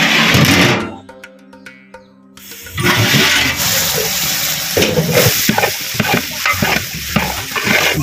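Mutton in masala liquid bubbling and sizzling at a boil in a large aluminium pot, under background music. The bubbling is quiet at first and comes in loud and dense from about a third of the way in.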